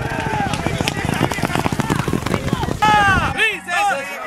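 Racehorses galloping on a dirt track, hooves drumming fast, under excited shouting from spectators cheering them on, with one loud high shout near the three-second mark. Near the end the sound cuts to music with singing.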